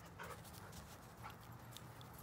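Faint panting of a dog close to the microphone, over a quiet low background hum.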